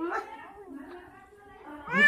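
A small child's short, wavering vocal cry at the start, followed by quieter voices.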